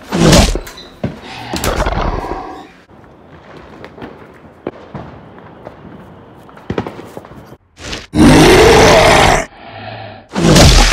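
Monster roar sound effects: short roars at the start and about two seconds in, then a quieter stretch with faint clicks, and a long, loud roar of over a second starting about eight seconds in.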